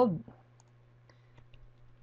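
A few faint, short clicks from computer input, made while text in an editor is being changed, over a low steady hum.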